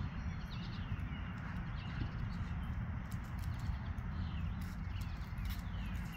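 Outdoor ambience: small birds chirping faintly and repeatedly over a steady low rumble on the microphone, with a few light clicks.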